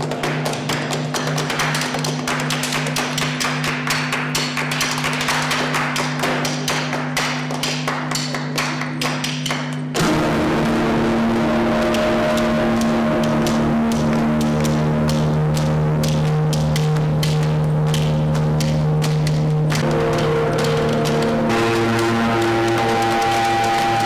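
Flamenco palmas, rhythmic hand-clapping, over a sustained electric-guitar drone of a few steady tones. About ten seconds in, the drone jumps louder into a denser chord and the clapping recedes under it.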